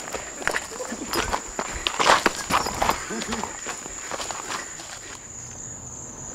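Hurried footsteps through grass, several a second, over the steady high trill of crickets; the steps die away about five seconds in.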